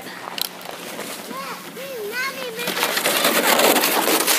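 A child's high, sing-song voice, then from a little under three seconds in a rough, crackly crunching and scraping of snow and ice on wet pavement that grows louder.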